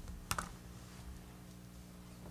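Two quick handling clicks a fraction of a second in, as papers and a wheelchair are shifted at a table, then a steady low hum.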